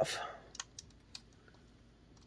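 A few light clicks from a 1:18 diecast sprint car model's top wing being handled and pressed back onto the car.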